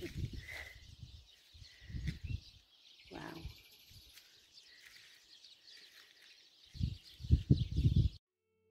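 Open-air ambience: low rumbling gusts on the microphone come in three clumps, the strongest near the end, with a few faint bird chirps early on.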